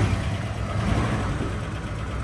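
1962 Oldsmobile Starfire's 394 V8 running just after starting, a steady low rumble that eases off slightly as it settles toward idle.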